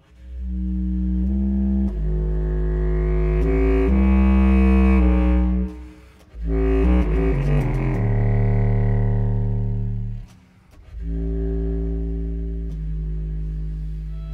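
Slow, long-held low chords from a chamber ensemble built around an Eppelsheim contrabass clarinet, with baritone saxophone, cello and double bass, the contrabass clarinet sounding a very deep bass line. The phrases break off twice, briefly, before the chords resume.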